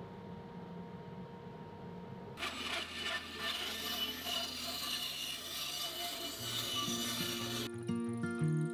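Band saw cutting through a wooden board, starting about two seconds in and stopping abruptly near the end, after a low workshop hum. Guitar music comes in under the sawing for its last second or so.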